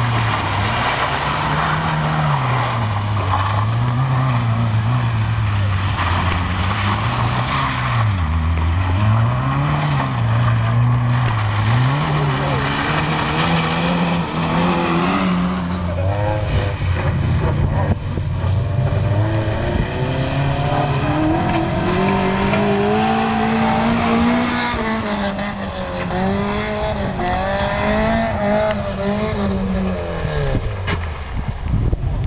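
Rally car engines revving hard and dropping back again and again as the cars are thrown through turns on a wet gravel course, with a hiss of flung gravel and water. About halfway the sound changes to another car, whose revs climb and hold higher.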